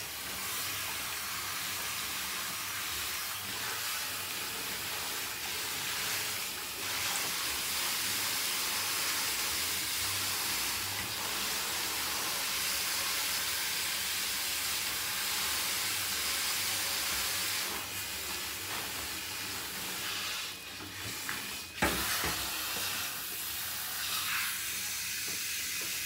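Water hissing steadily from a handheld shower head spraying in a bathtub. A single sharp knock comes near the end.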